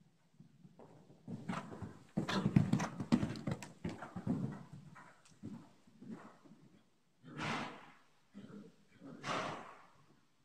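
Hoofbeats of a ridden horse cantering on the sand footing of an indoor arena, an uneven run of thuds loudest about two to four seconds in. Near the end come two short rushing noises.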